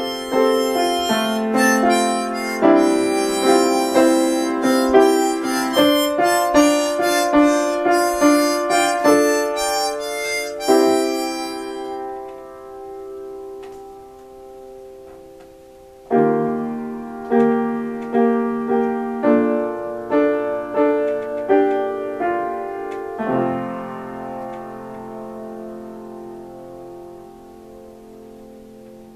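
Upright piano chords with a harmonica played over them for about the first twelve seconds. The notes then ring away, and a few seconds later the piano comes back alone with slower chords that fade out near the end.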